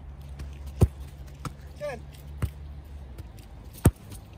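Sharp thuds of a football being struck and caught during a goalkeeper catching drill, four of them, the loudest near the end, over a steady low rumble.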